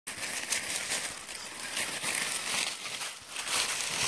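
Dry fallen leaves crunching and rustling underfoot: an irregular, continuous crackle of steps through a thick leaf litter.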